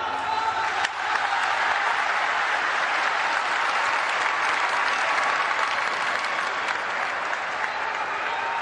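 A large audience applauding, with many people clapping in a dense, steady patter that holds at an even level throughout.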